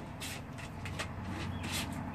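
Hands mixing wet rice bait of instant rice, ketchup and salt in a plastic bucket, scraping it down from the sides: a few short, soft rubbing scrapes.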